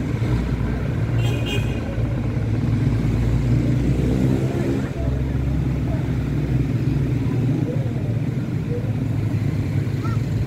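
Steady low rumble of city street traffic, with faint voices in the background.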